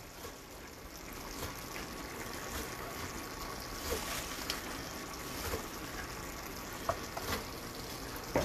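Cream sauce simmering in a skillet as it reduces: a steady soft bubbling hiss with a few faint small pops.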